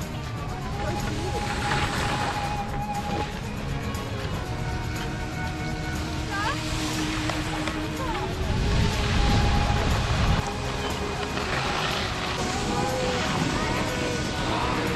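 Background music with long held notes over a steady hiss of wind and skis sliding on snow, with a deeper wind rumble on the microphone for a couple of seconds just past the middle.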